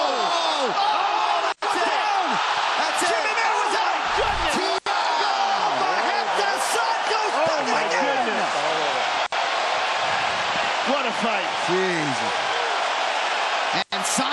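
Arena crowd roaring and cheering at a knockout, a dense wash of many shouting voices with a low thud about four seconds in. The sound drops out for an instant four times.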